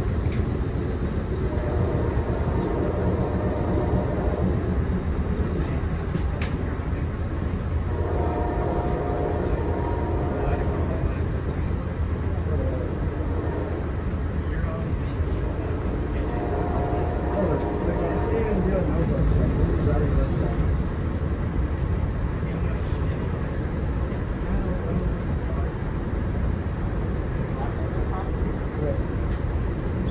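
Steady rumble and rush of a passenger train coach rolling at speed, heard from inside the car. Faint pitched sounds come through twice, around a third and over halfway in.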